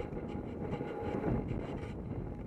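Wind rushing over a helmet-mounted camera's microphone as a horse canters across grass, with the horse's hoofbeats and the rider's movement as a steady rumble underneath.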